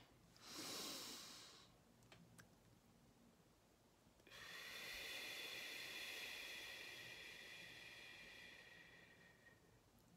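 A woman's slow, deep breathing. A short breath comes about half a second in, then a couple of faint clicks, then one long breath of about five seconds that slowly fades.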